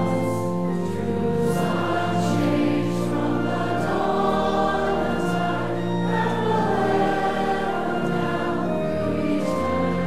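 A congregation singing a hymn together in long held notes that change every second or so.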